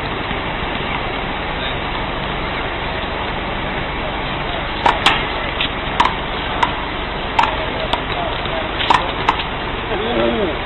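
Rubber ball being struck by hand and smacking off a concrete wall and the ground in a wall-ball rally: about eight sharp smacks, irregularly spaced, through the second half. Steady background noise runs throughout.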